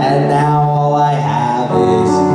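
A man singing long held notes into a handheld microphone over amplified music accompaniment, the pitch stepping between notes.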